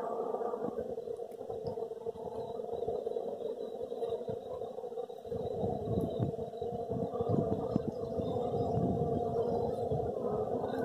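Steady humming drone of a dense honeybee colony buzzing over its exposed comb. From about five seconds in, a low irregular rumble joins it.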